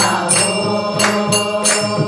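A group of women singing a devotional chant together, with hand claps keeping time at about three a second.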